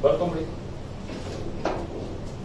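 A man's voice briefly, then a single short knock about one and a half seconds in.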